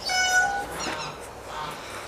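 A high-pitched animal call lasting about two-thirds of a second, followed by a couple of short falling calls.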